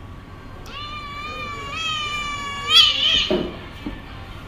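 A kitten's long, drawn-out meow, a distress cry while it is held by the scruff for an injection. It starts just under a second in, holds a steady pitch, then rises into a louder, harsher cry and breaks off a little after three seconds.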